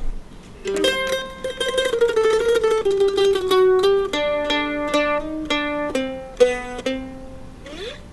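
Solo F-style mandolin picking a melody, starting about a second in. It uses rapidly repeated picking on held notes, then separate plucked notes and two-note chords.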